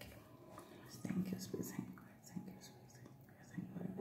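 A woman's voice murmuring very quietly, far below her normal talking level, in short broken snatches.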